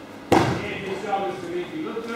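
A person's body hitting the dojo mat as an aikido partner is taken down: one sharp slap about a third of a second in, followed by a voice.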